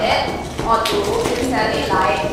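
A person's voice speaking, with a brief tap a little under a second in.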